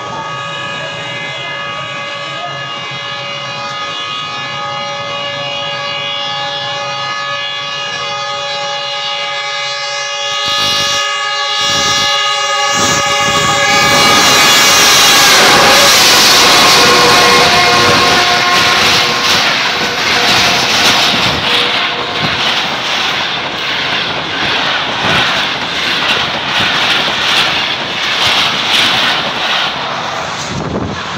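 A Pakistan Railways GEU-40 diesel-electric locomotive's horn sounds continuously as the express approaches at speed, growing louder. About halfway through the locomotive passes close by with a loud rush. The horn runs on a few seconds more, then the coaches clatter over the rail joints in a fast, even rhythm.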